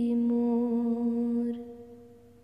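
The final note of a Hindu devotional bhajan, held steadily on one pitch as a sung or hummed tone, then fading out about three-quarters of the way through.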